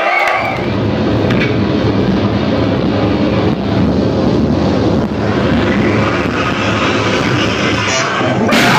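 Loud, steady, distorted roar of a live metal show on an overloaded recording, with no clear beat or tune.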